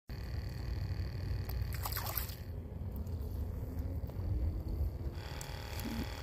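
Choppy lake water lapping against a wooden dock, with a low rumble of wind on the microphone.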